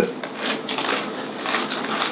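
Crunching of very thin potato chips being chewed, with the plastic chip bag crinkling as a hand reaches into it: a dense, rapid crackle of small snaps.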